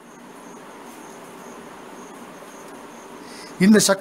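A pause in a man's talk filled by steady faint background hiss and a faint, high, evenly pulsing chirp, before his speech resumes near the end.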